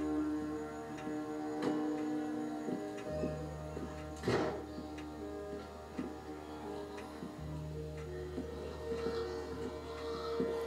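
Tense, suspenseful TV drama score played on a television: held drones and tones with a slow, regular ticking, and one loud, sudden hit about four seconds in.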